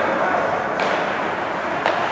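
Ice hockey game heard from the stands: steady arena noise with two sharp knocks from play on the ice, about a second apart.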